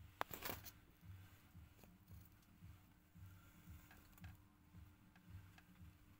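Near silence with a faint steady hum; one sharp click shortly after the start, followed by a brief rustle, and a few faint ticks later on.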